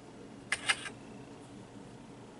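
Handling noise: two quick, sharp clicks about a fifth of a second apart, over faint room hiss.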